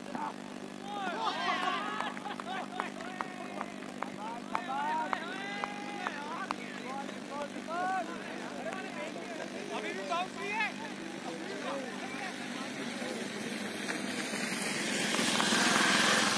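Cricketers' voices calling and shouting across the field in short, rising and falling calls, over a steady low hum. A rushing noise swells near the end.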